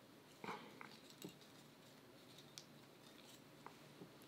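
Near silence with a few faint, brief rustles and ticks of hand handling: waxed thread and a webbing strap being pulled tight on a hand-sewn knot.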